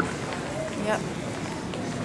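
Steady background noise of a busy airport terminal concourse, heard while walking with a handheld camera, with one short spoken "yep" a little under a second in.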